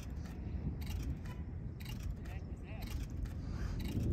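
Thunder from a close thunderstorm, a low, drawn-out rumble that sounds like a robot coming through the sky.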